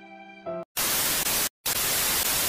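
TV static hiss sound effect used as a transition, in two loud bursts with a brief dead gap between them. It follows the fading end of sad violin music.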